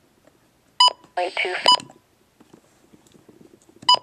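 Midland WR-100 weather radio's keypad beeps as its buttons are pressed to step through the menu: one short electronic beep about a second in, a second just under two seconds in, and a third near the end. A brief snatch of voice falls between the first two beeps.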